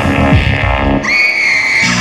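Psytrance from a live set: the kick drum and rolling bass cut out about a second in, a high synth tone slides in over the gap, and the low beat comes back near the end.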